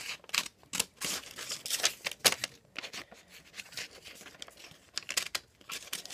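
A sheet of lined notebook paper being handled and folded, crinkling and rustling in short, irregular bursts with a few sharper snaps, the loudest a little past two seconds in.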